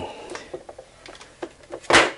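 Light plastic clicks of handling, then one sharp, loud knock near the end as an electrical plug is pushed into a Kill A Watt plug-in power meter.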